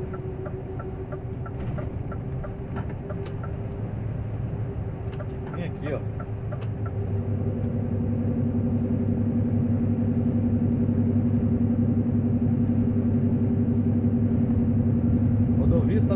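Heavy truck's diesel engine running, heard from inside the cab; about seven seconds in it pulls harder and its note deepens and grows louder.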